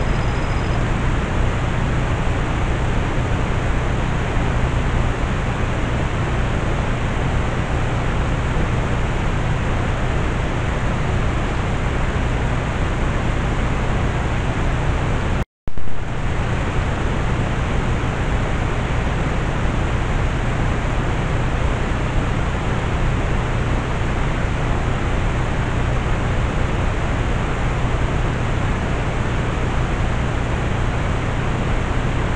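Steady, loud hiss with a low hum from a trail camera's own microphone and electronics. About halfway through it cuts out for a moment and resumes with a brief jump in level, where one recorded clip ends and the next begins.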